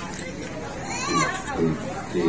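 Background chatter of several people's voices, with a child's voice among them.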